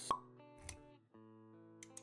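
A sharp pop sound effect just after the start, then a softer hit about half a second later, over quiet background music with held notes that briefly drops out around the middle and comes back; quick clicks follow near the end.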